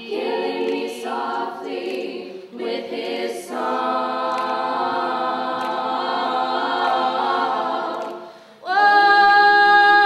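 Women's a cappella group singing in close harmony, unaccompanied. The singing breaks off briefly near the end and comes back louder on a long held chord.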